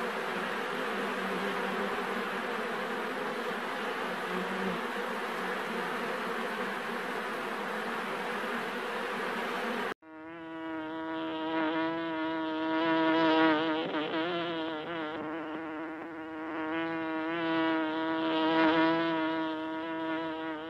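Many honey bees buzzing together in a dense, even drone. About halfway through it cuts to a closer recording with a clearer hum that swells and wavers in pitch as bees pass near.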